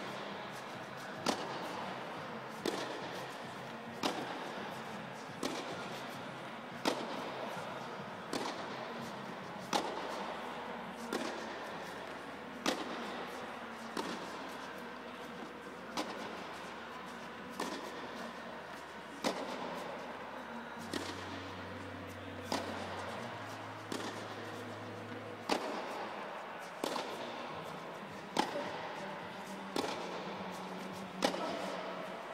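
Tennis balls struck with rackets in a steady rally, a sharp pop about every second and a half, echoing under the fabric dome of an indoor court.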